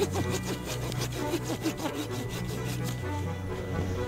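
A small hand blade sawing back and forth through the green trunk of a small conifer in quick strokes, with background music underneath.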